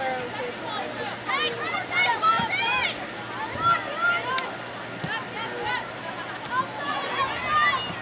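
Several voices talking and calling out over one another, no words clear: spectators and players at a soccer game, with some high-pitched shouts.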